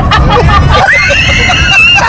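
Men laughing hard in a moving car, with a long high-pitched squealing laugh rising in the second half, over the low rumble of road noise in the cabin.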